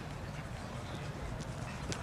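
Steady outdoor background noise, mostly low rumble, with a couple of faint taps late on.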